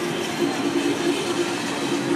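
Sky lift chair riding its haul cable: a steady mechanical rumble with a low drone that breaks off near the end.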